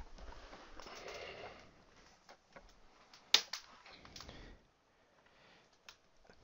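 Rustling and handling noises as a power cable is plugged into a laptop, with one sharp click a little over three seconds in and a smaller one just after.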